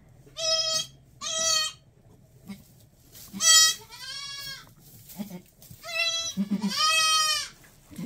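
Newborn goat kids bleating: a series of high-pitched calls, two short ones first and then longer, wavering ones, with faint low grunts from the doe in between.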